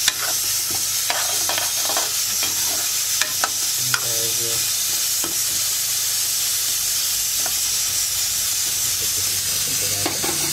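Corn kernels frying in an iron kadai while a steel ladle stirs them: a steady sizzling hiss with the ladle scraping against the pan, the scrapes coming thick in the first few seconds and thinning out after.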